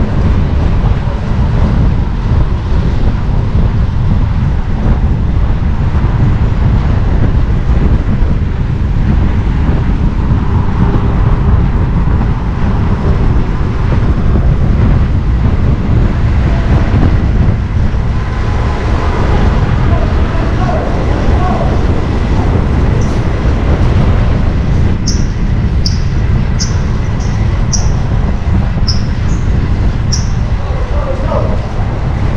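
Steady wind rush on the camera microphone and low traffic rumble while riding a bicycle in car traffic across a steel bridge. Near the end, a run of short high-pitched chirps about half a second apart.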